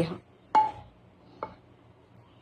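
Two light clinks against a ceramic mixing bowl as flour is added: a sharp one about half a second in that rings briefly, and a fainter one about a second later.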